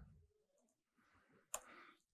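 Near silence with one sharp computer keyboard click about three-quarters of the way through: the Enter key being struck to run a typed command.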